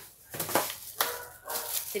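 A few short rustles and light knocks from plastic drinking bottles and their plastic bag being handled and picked up.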